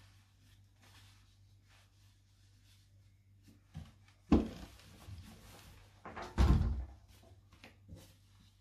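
A steam iron being handled on a table: a sharp knock about four seconds in, then a heavier, longer thump a couple of seconds later as it is moved and set down, with faint rustling of cotton fabric between.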